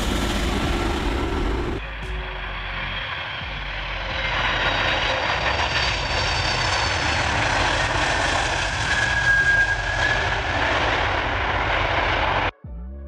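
Antonov An-124 Ruslan's four turbofan engines running at high power for takeoff: steady jet noise with a high whine. The sound dips about two seconds in and grows louder again from about four seconds in.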